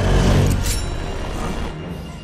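Action-cartoon soundtrack: a heavy crash with deep rumble in the first half-second over dramatic score music, then fading.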